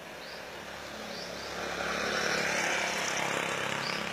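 A motor vehicle passing by: engine hum and road noise swell from about a second in, are loudest through the middle, and fade near the end.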